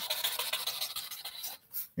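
Felt-tip marker scratching across cardboard in quick scribbling strokes as wavy hair lines are drawn. The scribbling stops about three-quarters of the way through, with one more short stroke near the end.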